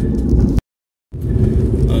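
Low, steady rumble of road and engine noise inside a moving car's cabin, cut off by about half a second of dead silence at an edit, then resuming.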